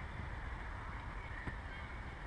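Steady outdoor background noise, with a faint tap about one and a half seconds in as a volleyball is hit on the sand court.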